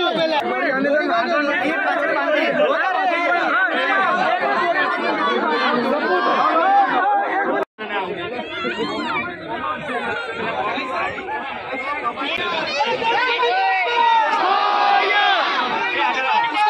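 Crowd of many people talking over one another, with laughter a second or two in. The sound cuts out for a split second just before halfway.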